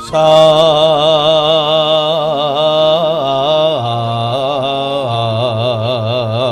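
A man's voice singing one long, held line in Javanese style with a wide wavering vibrato, stepping down in pitch about four seconds in: typical of a dalang's suluk, the mood song sung during a wayang kulit performance.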